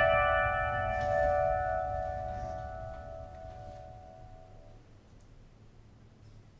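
The song's final chord on piano and ukulele ringing on and fading away over about five seconds, its tone wavering slowly, until only a faint low hum is left.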